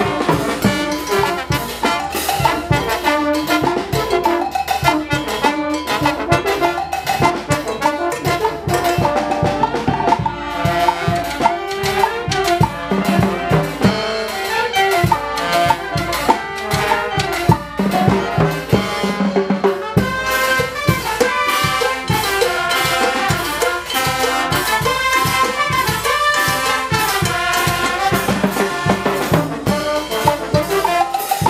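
Brass band (banda) playing a slow cumbia: trumpets and trombones carry the melody over bass drum, clashing hand cymbals and timbales, with saxophones and sousaphones.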